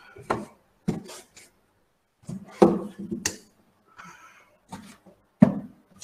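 Irregular knocks, bumps and rubbing of cardboard game boxes being handled and pulled from a shelf, heard through a video-call microphone.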